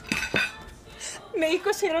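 Cutlery and dishes clinking on a restaurant table: a few sharp clinks in the first half-second, then a quieter stretch.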